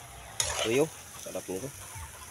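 Wet mixing of raw chicken feet and chicken pieces by hand in a metal bowl of marinade. A short voiced sound with a bending pitch about half a second in is the loudest event, with a second, shorter one around a second and a half.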